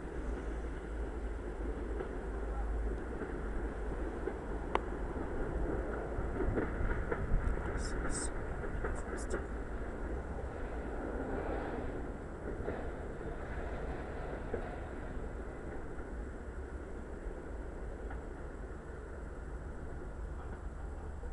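Electric trains approaching a station at a distance: a steady low rumble of wheels on rails, with a few short high squeaks about eight and nine seconds in.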